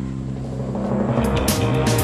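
Dramatic background music: low held notes swelling in loudness, with drum hits coming in about a second in.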